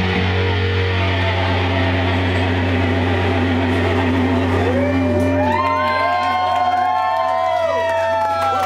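A live rock band holding out the end of a song. An electric bass sustains a low note throughout. From about halfway in, electric guitar notes swoop up and down in pitch.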